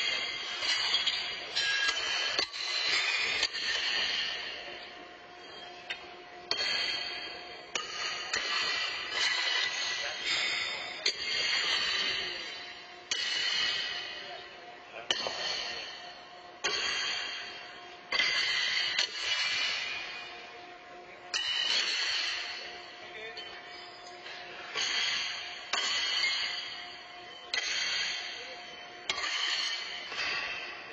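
Steel horseshoes clanging against the stakes and landing in the pits on several courts, a sharp metallic strike every second or two. Each strike rings on and echoes through the big arena.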